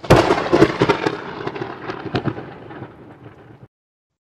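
Thunderclap sound effect: a sudden loud crack of thunder with crackling, fading over about three and a half seconds and then cut off.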